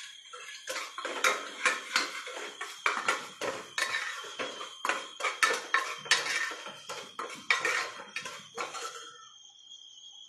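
A steel spoon scraping and knocking against a black metal cooking pot as a ginger, chilli and garlic paste is stirred into the masala. The strokes come a few times a second and stop shortly before the end.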